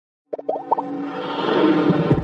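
Intro sound effect and music: a quick run of bubbly pops about a third of a second in, then a sustained musical swell that grows slightly louder.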